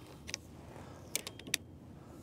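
Folding handlebar of a fat-tyre e-bike being folded down: a few sharp clicks and small rattles, one about a third of a second in and a quick run of clicks around a second and a half in.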